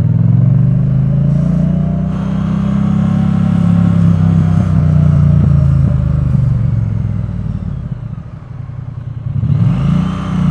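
Triumph Bonneville T100's parallel-twin engine pulling away and accelerating, its note rising and then holding steady under way. The engine eases off about eight seconds in and picks up again near the end.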